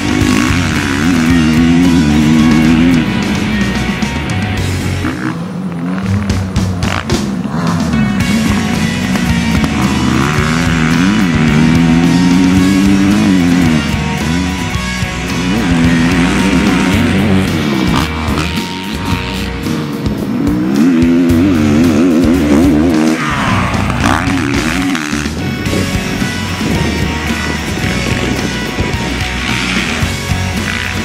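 Dirt bike engine revving as it is ridden around a track, its pitch rising and falling again and again as the rider accelerates and shifts. Music plays underneath.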